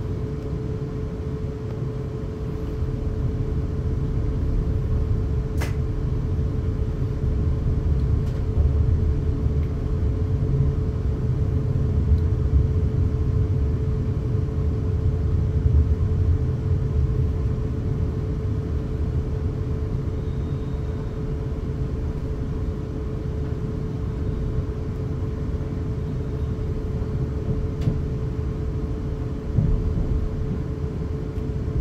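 Cabin sound of a Class 450 Desiro third-rail electric multiple unit getting under way. A low rumble of wheels and running gear builds after a few seconds, with a steady mid-pitched tone running underneath throughout.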